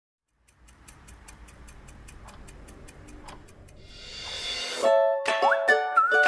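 Intro jingle: a fast, even clock-like ticking over a faint low hum, a rising swell about four seconds in, then a plucked-string tune starting near the end.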